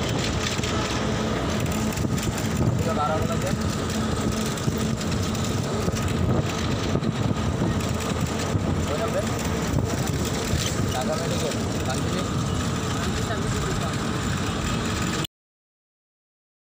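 Riding inside a moving city bus: steady engine and road noise with faint voices mixed in. The sound cuts off suddenly near the end.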